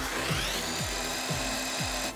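Cartoon sound effect of a gadget twisting strands into a rope: a mechanical whir whose pitch rises for under a second and then holds as a steady whine. Background music with a steady beat plays under it.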